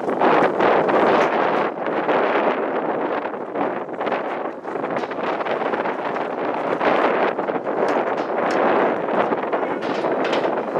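Wind buffeting the camera's microphone outdoors, a steady rushing that rises and falls in gusts.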